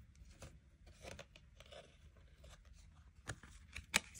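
Oracle cards being drawn from a deck and laid on a table: a few faint clicks and rustles, with a sharper snap just before the end.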